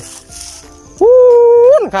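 One loud, drawn-out animal call that starts about a second in. It holds a single steady pitch for just under a second, then curls up and drops away at the end.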